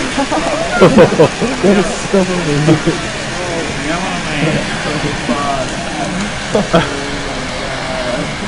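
A fierce chemical reaction burning and spraying sparks with a steady hiss and crackle, under people laughing and exclaiming, loudest in the first second or so.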